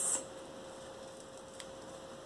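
Quiet room with a faint steady electrical hum. A brief soft hiss at the very start and a single faint tick a little past halfway.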